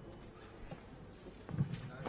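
Quiet room tone in a pause between speakers, with a few short faint knocks or clicks starting about a second and a half in.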